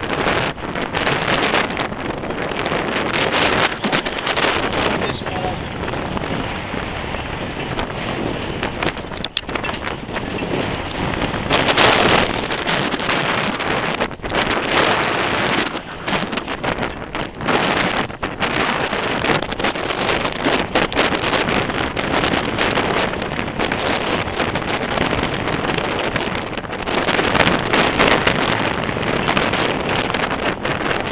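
Wind buffeting the microphone on a boat in choppy sea: a loud rushing noise that rises and falls in gusts. It is loudest about twelve seconds in and again near the end.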